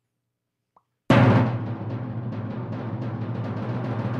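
A played-back drum-roll music cue. It starts suddenly about a second in with a loud hit, then carries on as a continuous roll over a steady low note.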